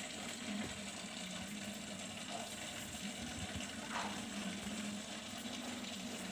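Home aquarium's filter running: a steady sound of moving water with a low hum underneath.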